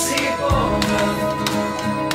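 A football tribute song playing: a band with sustained chords over a steady drum beat.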